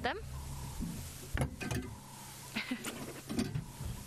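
Handling noise from the camera rig: a few short clicks and knocks over a low rumble.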